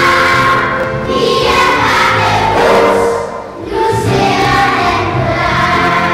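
Children's choir singing a Danish song, with a brief pause between phrases about three and a half seconds in.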